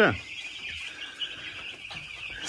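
Continuous massed peeping of a large flock of young chicks in a brooder, a dense steady chirping chorus.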